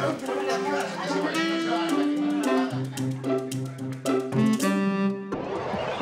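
Comedic background music led by bowed strings and plucked double bass, moving in held notes that change step by step. Near the end it cuts off suddenly into a short rushing whoosh.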